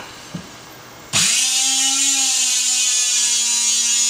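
Brushless electric motor of a RUNSUN RB20 handheld rebar bender starting suddenly about a second in and running loudly and steadily with a high whine as it bends a steel rebar to 90 degrees. A small click comes just before it starts.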